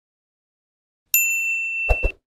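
Silence, then about a second in a notification-style bell chime sound effect rings, one steady high tone held for about a second, with two quick clicks at the end.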